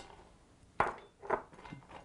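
A metal spoon clicking sharply against a glass ring mold three times, about half a second apart, as pecans are packed down into butter and brown sugar.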